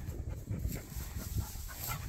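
A dog panting, over a steady low rumble.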